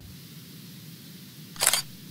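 A single short, sharp sound-effect burst, like a camera shutter, as the animated logo appears about a second and a half in, over a steady faint hiss.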